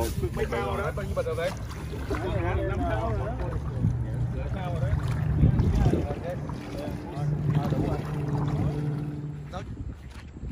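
Indistinct voices talking over wind on the microphone, with a steady low hum underneath that stops shortly before the end.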